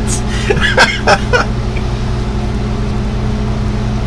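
A steady low hum, several even tones with a hiss above them and no change in pitch, as from a fan, air conditioner or electrical hum in the room.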